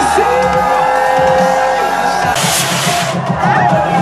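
Electronic dance music played loud over a club sound system during a live DJ set: held synth notes with the deep bass dropped out, a short loud hiss about two and a half seconds in, then a steady beat kicking back in near the end, with a crowd cheering.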